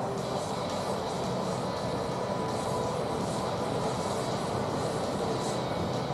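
Steady rushing noise of ocean surf washing in, with no distinct events.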